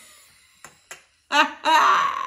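Two faint clicks, then a woman breaking into loud laughter about halfway through.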